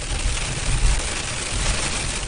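Heavy rain mixed with pea-size hail beating on a moving car's windshield and roof, a dense, steady rush over the low rumble of tyres and engine heard from inside the cabin.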